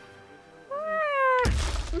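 A cat meowing once, a single call that rises and then slides down, followed about a second and a half in by a sudden heavy thump.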